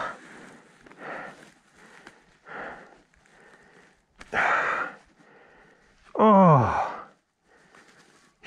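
A man's pained breathing: a few sharp breaths and a loud hissing exhale, then a groan that falls in pitch, from a thorn stuck under his thumbnail.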